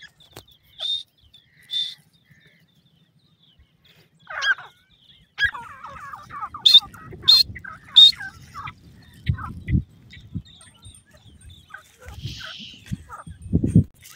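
Francolins calling: two short, sharp high calls, then a run of rapid chattering notes with a few sharp high calls among them. Heavy low thumps come twice in the second half.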